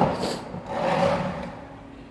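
A plastic chair's metal legs scraping briefly on a concrete floor as the chair is set down upright.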